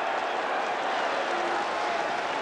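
Large stadium crowd cheering, a steady noise with no break.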